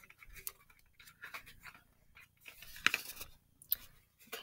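A small cardboard cosmetics box being opened at one end and the tube slid out: faint scratching and rustling of card with a few sharper clicks, the sharpest about three seconds in.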